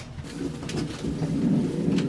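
Fleece sweater rustling as it is pulled on over the head, with a low, muffled cooing hum underneath.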